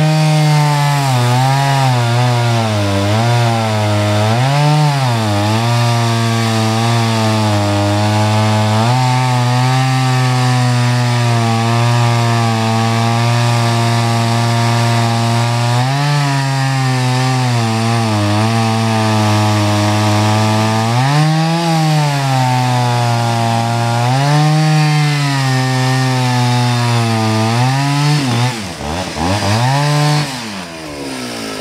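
Two-stroke chainsaw at full throttle cutting through a hickory log, its pitch sagging and recovering again and again as the chain, not very sharp, labours in the hard, muddy wood. Near the end the revs fall away sharply, then pick up again.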